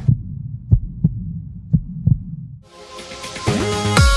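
Heartbeat sound effect: low double thumps, about one pair a second. Music with a beat comes in near the end.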